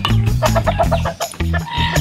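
A chicken clucking, with a longer pitched call near the end, over background music with a steady beat.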